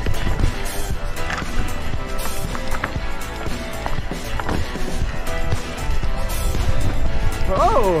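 Background music over the constant rumble and rattle of a mountain bike riding fast down a rocky trail, with frequent sharp knocks from the wheels striking rocks. A rider shouts near the end.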